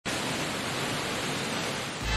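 Steady rushing noise, even across low and high pitches, beginning abruptly.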